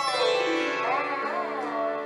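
Solo sitar: a stroke on the strings right at the start, then the melody note bent smoothly up and down (meend) over the steady ringing of the other strings.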